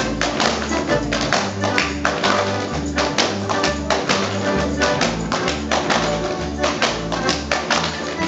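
Rapid, sharp slaps and stamps from Alpine folk dancers (Schuhplattler-style) on a wooden stage, over Tyrolean folk music with a steady, repeating bass line.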